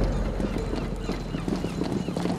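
A quick, irregular run of hard footfalls on a hard surface, over a low background rumble.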